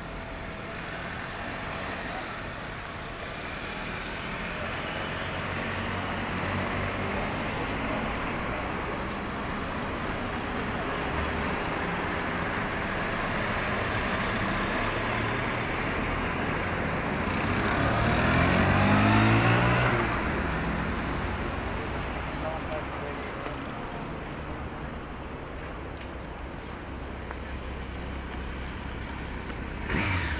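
Steady road traffic at a city intersection, cars running through. About 18 seconds in, one vehicle passes close by, the loudest moment, its engine note dropping in pitch as it goes past.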